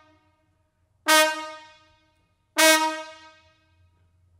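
Solo trombone playing two loud, separate blasts on the same note, about a second and a half apart. Each starts hard and dies away over about a second.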